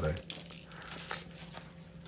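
Pokémon trading cards being flipped through and handled by hand: a light rustle with small clicks.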